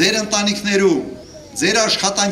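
A man's raised voice speaking into a microphone, in two phrases with a short pause about a second in.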